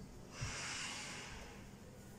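A person breathing out audibly, a soft hiss that starts about half a second in and fades away over about a second.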